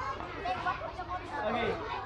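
Several people's voices talking over one another in open-air chatter.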